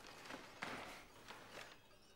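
Faint newspaper rustling as the paper is folded down and laid on a table, with a few light knocks.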